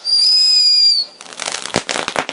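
Ground fountain firework: a shrill whistle for about a second that dips slightly in pitch as it cuts off, then a dense run of sharp crackling pops.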